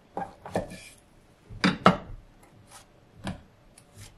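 Kitchen knife scoring a king oyster mushroom on a wooden cutting board, the blade knocking on the board in a handful of sharp taps. The loudest are two close knocks a little under two seconds in.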